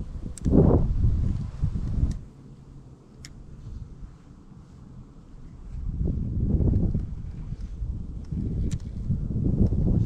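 Wind buffeting the microphone in low, irregular gusts, strongest in the first two seconds and again from about six seconds on, with a few faint ticks.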